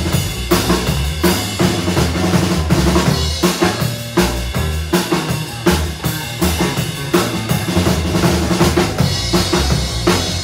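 Live band playing an instrumental stretch with no singing: electric bass notes and a drum kit keeping a steady beat.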